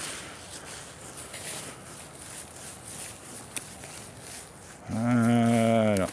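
Faint rustling of footsteps through leaf litter with a single click. Near the end a man's voice holds one steady low note for about a second.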